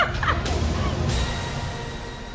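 Laughter trailing off in the first half-second, followed by a steady rushing noise with a low rumble that brightens with added hiss about a second in, the start of a logo-sting sound effect.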